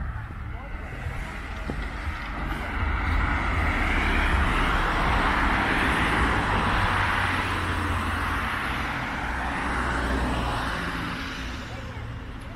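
Road traffic: a vehicle passing on the road alongside. Its noise swells over a few seconds, is loudest in the middle, and fades away near the end.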